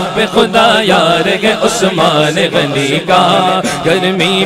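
A male voice singing an Urdu manqabat (devotional praise poem) in a drawn-out, ornamented melody over a steady low drone.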